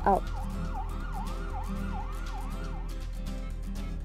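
Emergency-vehicle siren sounding in fast, repeated up-and-down sweeps, about two and a half a second, over steady background music; the siren stops about three seconds in.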